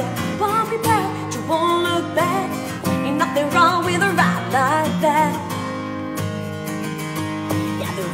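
A steel-string acoustic guitar strummed in steady chords, with a woman singing wavering, wordless vocal runs over it for the first few seconds.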